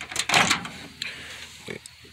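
Brief scraping and a light click from the glass turntable plate and the ceramic-lidded shot glass being handled. A short word is spoken near the end.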